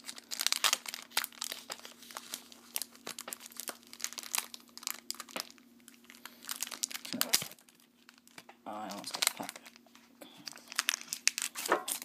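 Foil Pokémon TCG booster pack wrapper being handled, crinkled and torn open by hand: a continuous run of sharp crackles, loudest about seven seconds in and again near the end.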